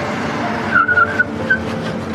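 A white Porsche Panamera pulling up, its tyres giving a short squeal about a second in, with a brief second chirp just after, over background music. A few light clicks follow near the end.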